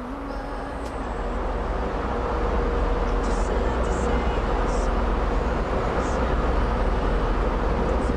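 Wind and ship noise on an open warship deck: a steady rush with a deep rumble, growing louder over the first three seconds and then holding, with a faint steady hum.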